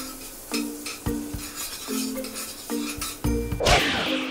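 Metal spoon stirring in a wok on a gas stove, scraping and clinking against the pan about twice a second, with a light sizzle of frying, over soft background music. A loud whoosh rises and falls near the end.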